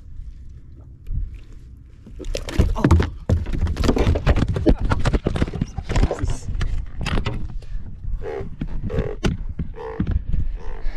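A large blue catfish thrashing in the angler's hands knocks the camera about against the kayak: a dense run of knocks, rattles and scrapes starting about two seconds in and easing off near the end. Short vocal sounds follow near the end.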